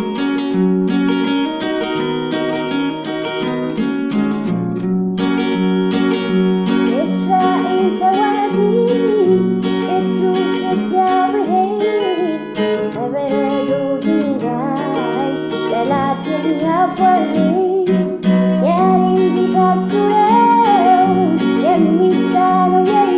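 Acoustic guitar playing chords while a woman sings an Amharic gospel song; her voice comes in about seven seconds in and carries the melody over the guitar.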